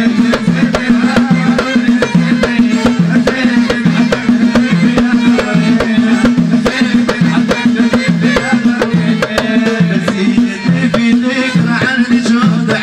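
Live Moroccan Amazigh folk music. Hand-struck frame drums beat a fast, dense rhythm over a repeating low two-note figure, with a wavering melody line above.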